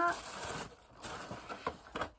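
Tissue paper rustling and cardboard flaps being handled as a packed subscription box is opened. The rustle is strongest at first, then softer, with a couple of small clicks near the end.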